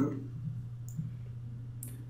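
A few faint clicks and two brief hissy flicks over a steady low electrical hum.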